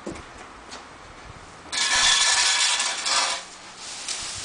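A loud hissing noise starts suddenly about two seconds in, lasts about a second and a half, and cuts off.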